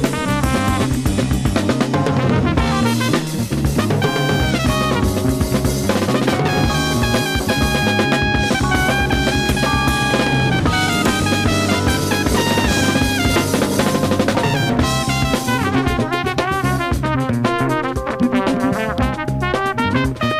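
1970s jazz-funk band playing: a drum kit with snare and bass drum drives a busy groove under brass lines, with held horn notes through the middle.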